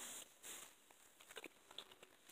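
Near silence with a boy chewing a mouthful of Gushers fruit snacks, mouth closed: two short soft breaths near the start, then scattered faint wet clicks.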